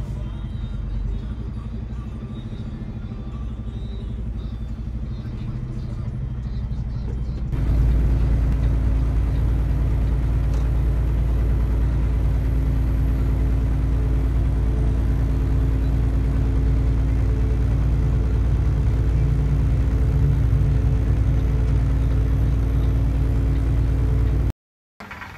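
Semi truck cab interior noise: steady low engine and road rumble while driving. About a third of the way in it jumps louder, with a steady engine hum that holds through the rest.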